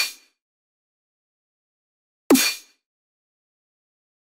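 Snare drum sample played through Ableton's Corpus resonator in plate mode with the material turned way up. It gives a single sharp hit a little over two seconds in, with a short metallic ring that dies away within half a second. The tail of an earlier hit fades out at the very start.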